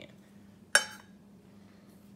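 A metal tuna can set down on a stone countertop: one sharp clink with a brief metallic ring, about three-quarters of a second in.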